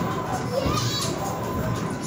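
A crowd of children chattering and shouting, with music playing underneath.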